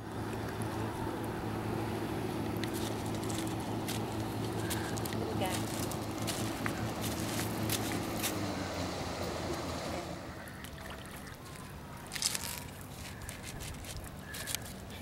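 A steady engine hum at a low, even pitch, which dips slightly in pitch and fades out about nine or ten seconds in. Sharp clicks come and go over it.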